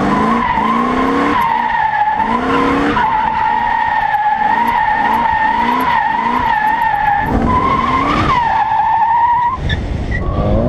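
Rear tyres of a Pontiac Trans Am squealing through a long drift, the squeal wavering slightly in pitch, then cutting off just before the end. Under it, the car's 5.7-litre LT1 V8 with long-tube headers and aftermarket exhaust climbs in revs again and again, about twice a second through the middle.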